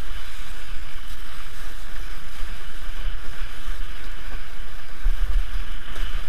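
Steady rush of water past a windsurf board under sail, with wind buffeting the microphone in a low rumble that grows heavier near the end.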